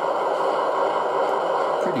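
Factory-fitted DCC sound decoder of a Lenz O gauge DB V100 (BR 212) model diesel locomotive playing a steady diesel idle through the model's small onboard speaker, with the loco standing still. The sound is an even drone with little bass.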